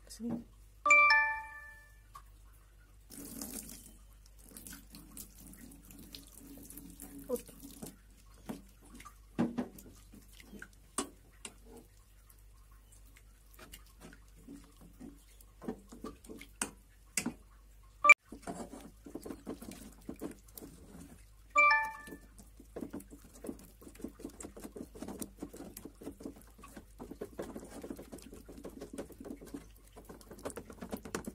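Spoon stirring and scraping thick rice-flour paste in a stainless steel saucepan, with scattered clinks against the pan. Twice, about a second in and again about two-thirds of the way through, a bright ringing chime with several tones sounds for about a second; these are the loudest sounds.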